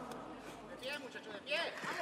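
Faint voices over low room noise: a man exclaims "oh" about a second in.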